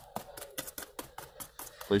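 Fingertips tapping on a Mod Podge-coated paper sculpture, a quick uneven series of crisp light taps, about five a second. The crisp taps show the coating has dried hard and stiff.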